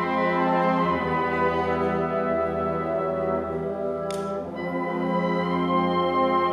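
Concert wind band playing sustained chords with brass and horns to the fore; a deep bass note comes in about a second in, and a brief swish sounds about four seconds in.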